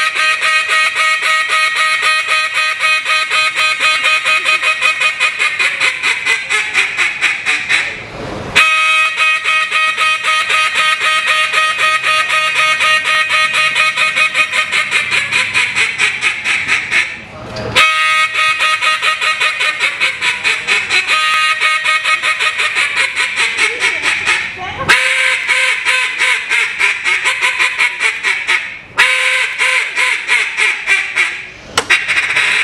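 Contest-style (Main Street) duck calling on a hand-held duck call: long runs of rapid quacks, with short breaks between sequences about 8, 17, 25 and 29 seconds in.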